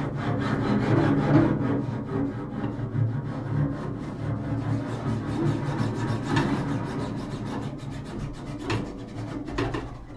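Double bass played with the bow in an unaccompanied solo: low notes in quick, repeated bow strokes, fading somewhat toward the end.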